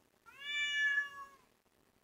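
Tabby house cat meowing once, a single long whining call that rises at the start and falls away at the end. It is his morning demand for wet food.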